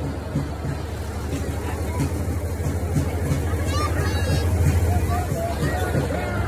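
Low, steady engine rumble of a vehicle running at low revs, swelling a little louder about two thirds of the way through, with crowd chatter over it.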